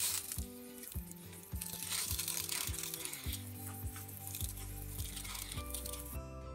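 Handheld pressure sprayer misting water onto seed-starting soil: a steady spray hiss that stops near the end, while background music plays.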